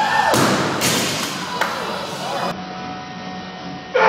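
Heavily loaded barbell with rubber bumper plates dropped from overhead onto the gym floor: a thud, then it bounces and hits twice more, each impact ringing a little in the large room.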